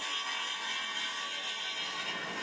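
Steady whir of a sawmill's circular saw bench running.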